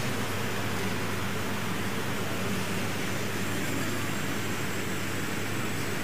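Steady, unchanging hiss-like room noise with a faint low hum underneath: the background ambience of a large, crowded hall.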